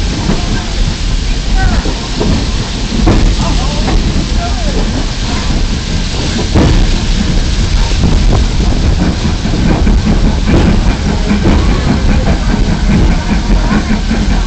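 Steady loud rumble and hiss of a moving train, with people's voices mixed in.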